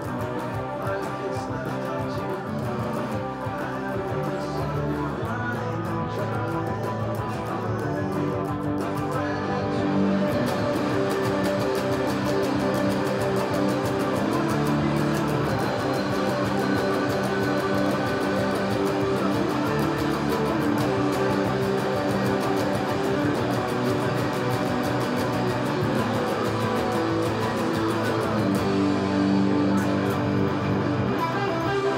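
Electric guitar strumming chords continuously through a song-length rock part, getting louder and brighter about ten seconds in.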